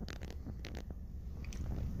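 Faint clicks and rustles from a handheld camera being moved, over a low steady hum.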